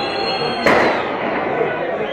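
A single sharp bang about two-thirds of a second in, the loudest sound here, over the chatter of spectators in the stands.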